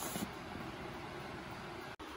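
Faint, steady background hiss: room tone, with no distinct sound events.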